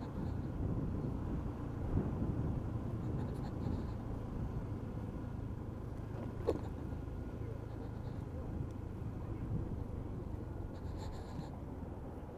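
Honda X-ADV maxi-scooter's engine running steadily at low road speed, with road and wind noise on a helmet-mounted microphone. A single short sharp blip comes about six and a half seconds in.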